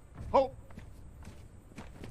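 A squad of soldiers' boots on turf coming to a stop at a shouted "Halt!" about a third of a second in, followed by a few soft footfalls and gear knocks over a low steady rumble.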